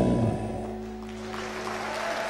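A live band's final chord ringing out and slowly fading on electric guitar through the amplifiers. Audience applause rises underneath as the chord dies away.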